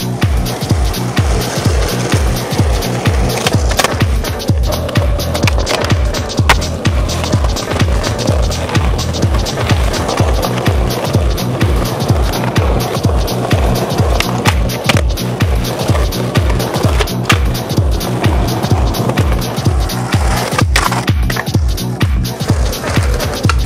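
Music with a steady heavy bass beat, with skateboard sounds mixed in: urethane wheels rolling on concrete and a few sharp clacks of the board popping, landing and grinding a granite ledge.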